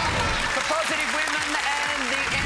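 Studio audience applauding and cheering, with music playing underneath.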